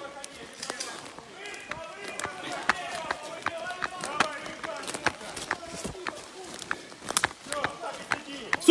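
Quick footsteps crunching through dry leaf litter on a forest floor, a stream of short sharp rustles and snaps, with voices shouting more faintly underneath.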